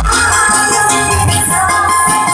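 Live dangdut koplo band music played loudly: a Korg arranger keyboard carries the melody over bass and a steady beat.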